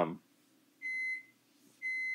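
Microwave oven beeping to signal that its cooking cycle has finished: two steady beeps of one pitch, each under half a second, about a second apart.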